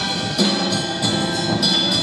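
Live band playing: grand piano with a brass section and sousaphone over a steady percussion beat.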